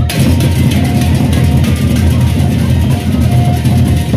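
Lombok gendang beleq ensemble playing loudly: large double-headed barrel drums beaten in a fast, dense pattern under the continuous clash of handheld cymbals.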